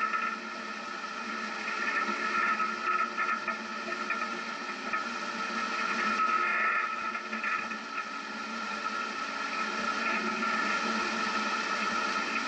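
Off-road vehicle driving slowly up a sandy dirt trail, picked up by a vehicle-mounted camera. It is a steady running noise with a constant high-pitched hum over rumble, with no deep bass.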